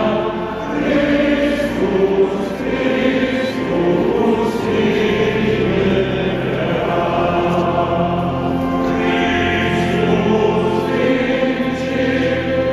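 Choir singing sacred chant in long, held notes, with no beat.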